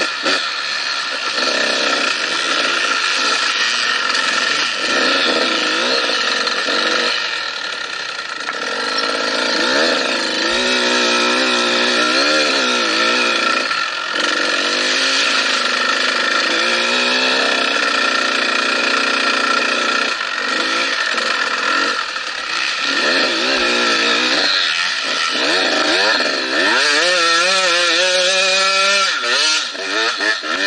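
Dirt bike engine heard from the bike itself while riding off-road, revving up and dropping back again and again as the throttle opens and closes through the gears, with a long rising rev near the end.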